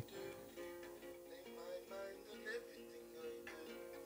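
Faint acoustic guitar playing a song idea in an alternate tuning, a few picked notes ringing on over each other, heard played back from a phone's speaker.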